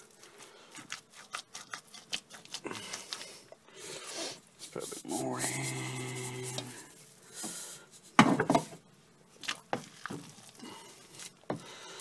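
A spoon stirring and scraping through a thick, stodgy corn mash in a stainless steel pot, in short strokes and clicks, as barley malt is poured in. About two-thirds of the way through comes one loud, sharp knock.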